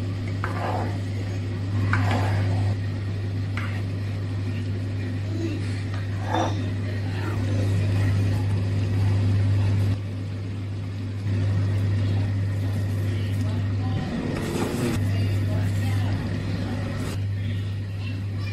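A steady low hum that shifts in level a few times, with a few brief faint voice-like sounds over it.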